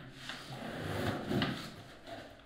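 Wooden classroom furniture being shifted: a sliding scrape with a couple of knocks, the loudest about a second and a half in.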